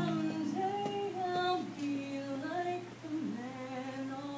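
A woman singing a slow melody in long held notes, with acoustic guitar accompaniment.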